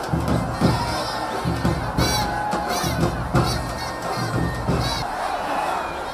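Large crowd shouting and cheering, with several shrill high-pitched calls rising and falling above it. A heavy low rumble underneath drops away about five seconds in.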